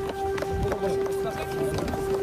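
Air-raid siren sounding a steady tone that begins to fall slightly in pitch near the end, warning of an air attack. Hurried footsteps and scattered voices of people moving for shelter are heard underneath.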